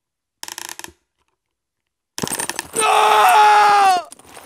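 Sound effects of an animated title sting. A brief rattle of rapid metallic clicks comes first, then after a pause a clattering run of clicks leads into a loud sustained whine that falls slightly in pitch and stops abruptly.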